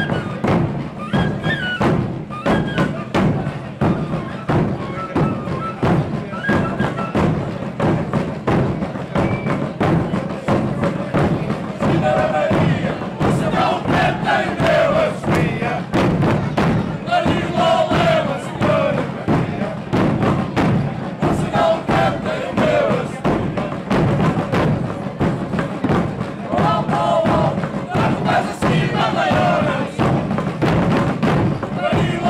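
A traditional Portuguese bombo band: several large bass drums and a smaller side drum beat a steady, fast, driving rhythm. For roughly the first third a small fife plays a high melody over the drums. After that the fife stops and the drummers sing together loudly over the drumming.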